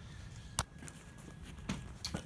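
Quiet background with one sharp click a little over half a second in and a few faint ticks after it.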